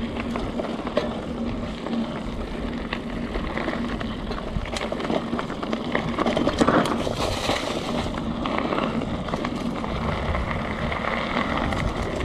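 A mountain bike rolling fast down a dirt forest trail. Its knobby tyres make a steady rumble, with wind buffeting the microphone, and the bike gives scattered clicks and rattles as it goes over bumps.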